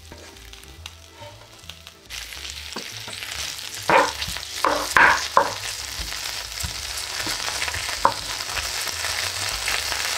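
Diced guanciale and lardo sizzling in a frying pan, the sizzle starting about two seconds in and growing louder. A wooden spatula scrapes and knocks against the pan several times around the middle as the pieces are stirred.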